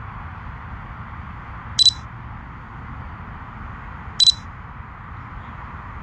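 Two short, high electronic beeps from a drone's remote controller, about two and a half seconds apart, over a steady background hiss.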